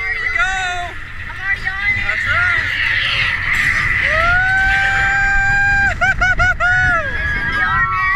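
Roller coaster riders calling out and cheering as the train gets under way, with one long held "woo" about four seconds in and a rapid wavering yell just after. Under the voices runs the low rumble of wind and the moving train.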